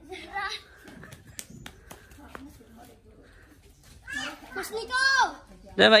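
Children calling out while playing hide and seek: a short call at the start, a few faint sharp knocks in the quieter middle, then high-pitched child shouts that rise and fall about four to five seconds in.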